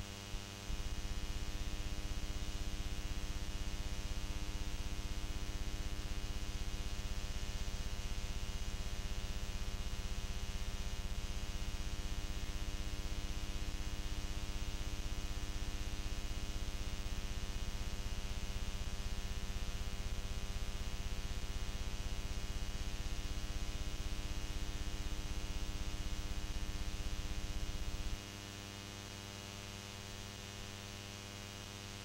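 Steady electrical hum with a stack of overtones, jumping louder about a second in and dropping back to a fainter hum about two seconds before the end.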